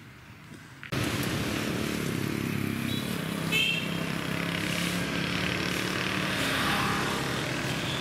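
Small motorbike engines running in street traffic, starting abruptly about a second in and continuing steadily.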